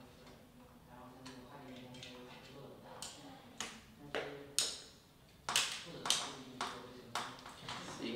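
A series of sharp plastic clicks and taps, about eight in the second half, as small 3D-printed linkage parts are pushed and snapped onto the eyeballs of an animatronic eye mechanism.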